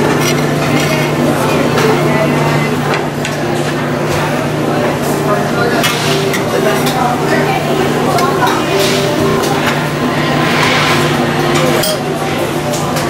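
Busy buffet hubbub: indistinct background chatter and the clink and clatter of serving utensils against metal pans and dishes, over a steady low hum.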